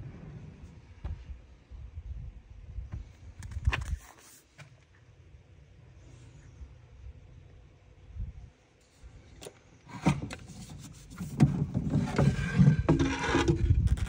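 Handling of a wooden cabinet door and an EV charging cable: a few scattered knocks and rubs early on, then a louder, rough stretch of rubbing and scraping over the last few seconds.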